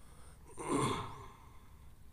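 A man's single heavy sigh into a close microphone, about half a second in, from a speaker whose voice is choked with emotion.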